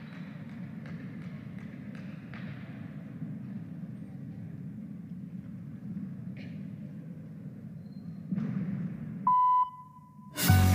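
Steady low murmur of a large sports hall with a few faint knocks. Near the end comes a single short electronic beep, about half a second long and the loudest sound here, the start signal just before a rhythmic gymnast's routine music begins.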